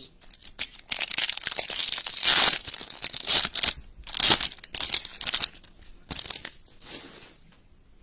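Foil trading-card pack being torn open and its wrapper crinkled: a run of crackling rips, loudest about two and four seconds in, with a few softer crinkles near the end.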